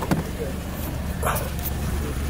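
Steady low rumble of a car running, heard inside the cabin, with a sharp click just at the start and faint voices in the background.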